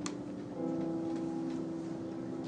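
Digital piano playing slow held chords, a new chord sounding about half a second in and ringing on. A single sharp click comes right at the start.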